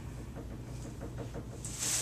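A wide-tooth comb drawn through wet, conditioned hair gives faint soft rubbing over a low steady hum. A burst of hiss comes near the end.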